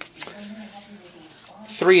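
A man's low, steady hummed "mmm" as he pauses in speech, with a couple of short paper clicks at the start as cardstock pieces are handled; he starts speaking again just before the end.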